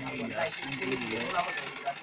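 Cast-iron treadle sewing machine running under foot power, stitching with a rapid, even clatter of clicks. A voice talks over it through the first part.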